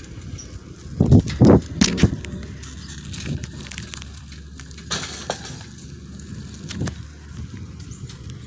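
Rumble and handling noise on a hand-held phone's microphone outdoors. There are a few loud knocks between one and two seconds in, and a couple of fainter clicks later.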